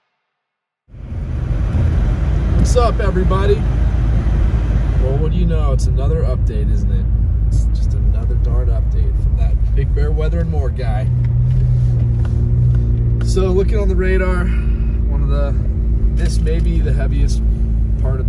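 A car driving on a wet, snowy road, heard from inside the car: a steady low rumble of engine and tyres that starts about a second in.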